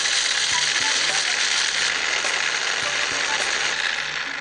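Small electric food chopper running steadily, its blade grinding roasted peanuts to a coarse crumb; the motor winds down near the end.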